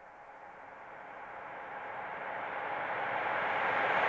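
A hiss-like noise swell that grows steadily louder all the way through, with no pitch to it.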